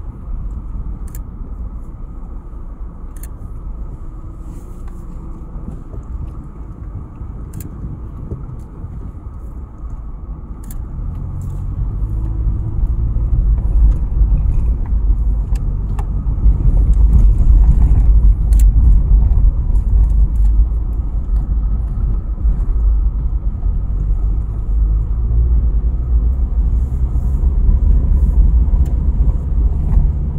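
A car driving over unpaved desert ground. The low, steady rumble of engine and tyres grows louder about a third of the way in and stays louder, with occasional faint clicks and rattles.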